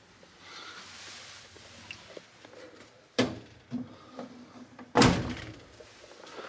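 Laundry-closet doors being shut: a sharp knock about three seconds in, then a louder thud with a short rattle at about five seconds, after a soft rustle near the start.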